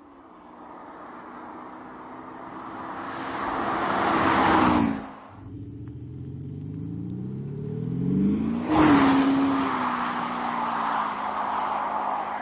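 Audi SQ5 TDI's 3.0 V6 diesel and tyres as the SUV drives past: the noise builds and the engine note drops as it passes about four and a half seconds in, then stops suddenly. After that the engine note climbs under acceleration and the car sweeps past again near nine seconds, its pitch falling away into steady road noise.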